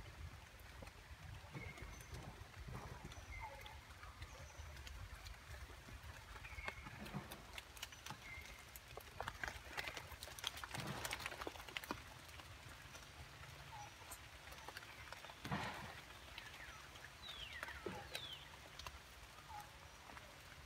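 Faint rustling and crackling of leaves and twigs as a young macaque pulls at branches and feeds, loudest about ten seconds in and again a few seconds later. Short high chirping calls come now and then, and two falling whistled calls come near the end.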